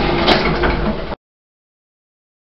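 Lift car doors sliding open, with a sharp click about a third of a second in. The sound cuts off suddenly a little over a second in.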